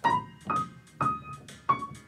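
Grand piano being played: four notes or chords struck one after another, about half a second apart, each ringing and then fading.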